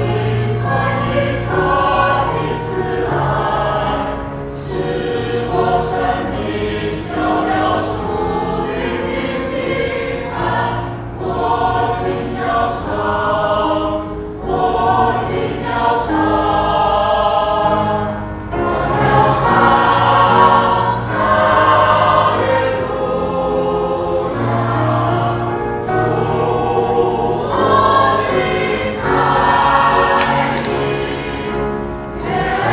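A mixed choir of men's and women's voices singing a sacred song in parts, with sustained low notes under shifting upper harmonies and reverberation from the church.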